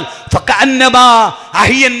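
Speech only: a man speaking emphatically into a microphone, resuming after a short pause at the start.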